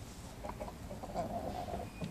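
A game rooster gives one short, rough call lasting under a second, starting about a second in.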